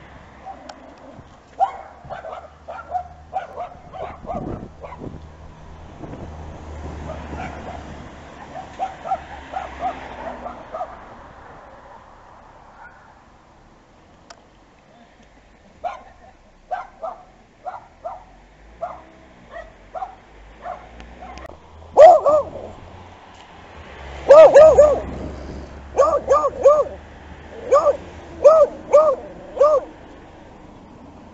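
A dog barking in bursts of short barks, fainter through the first half and loudest in a run of quick, evenly spaced barks over the last third.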